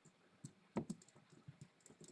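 Faint, scattered computer keyboard keystrokes, a few separate clicks, as letters in a word are deleted and retyped.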